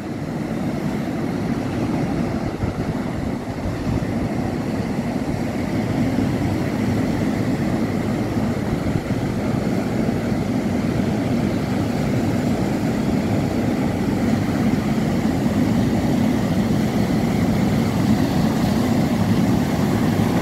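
Steady rumbling roar of wind buffeting the microphone, mixed with the wash of surf breaking on a rocky shore.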